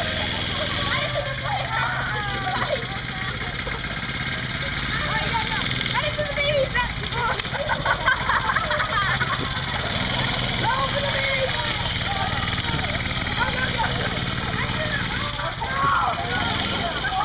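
A small mini-bike engine running steadily at a low idle under children's voices and shouts.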